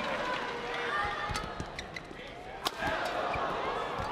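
Badminton shoes squeaking and footfalls on the court mat, with a few sharp knocks and a low crowd murmur behind.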